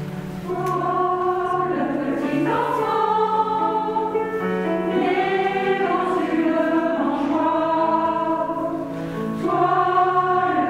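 Mixed choir of men and women singing a slow Christmas song in held chords, each note sustained about a second.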